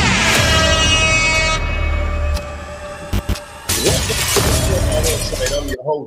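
Cinematic intro music with a heavy bass: a sharp hit at the start with a ringing tail that fades over a second or so, two quick sharp hits a little past halfway, then a noisy swell before the music cuts off abruptly just before the end.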